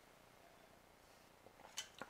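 Near silence: room tone, with a few short, faint clicks near the end.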